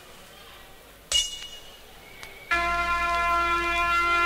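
Drum and bass mix in a beatless breakdown: a single bell-like ping about a second in, then a long steady held note with deep bass underneath comes in about halfway through.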